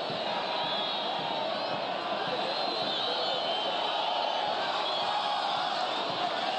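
Large football stadium crowd: a steady, dense din of many voices.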